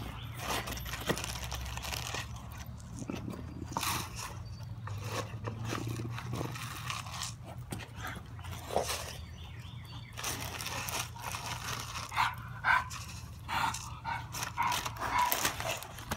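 Pit bulls vocalising amid scattered rustles and clicks. Dry oats are poured from a plastic bag into a plastic dog bowl about four seconds in.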